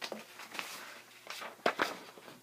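A sheet of paper being handled and rustled, with two sharper crinkles in quick succession near the end.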